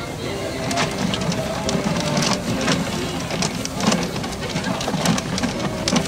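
Large clear plastic raffle drum full of paper tickets being turned by hand, the tickets sliding and tumbling inside with irregular clicks and knocks from the drum. A crowd murmurs in the background.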